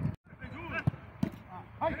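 A football kicked twice in a passing drill, two sharp thuds, mixed with players' shouts and calls across the pitch.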